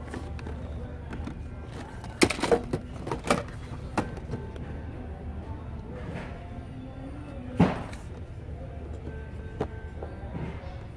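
Boxed action figures being handled and taken off store shelf pegs: a few sharp knocks and clatters of cardboard-and-plastic packaging, bunched together a couple of seconds in and with one loudest knock about three-quarters of the way through, over a steady low hum and quiet background music.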